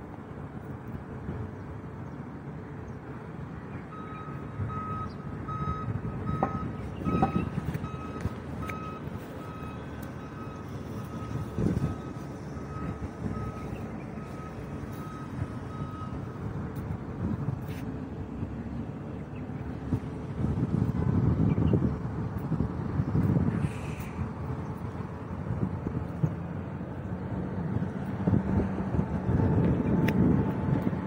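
A vehicle's reversing alarm beeping repeatedly for about twelve seconds, starting about four seconds in. Underneath it runs a continuous low rumble of road traffic that swells several times, loudest in the last third.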